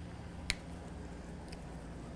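Whiteboard marker's cap snapped shut with one sharp click about half a second in, over a steady low hum of room tone.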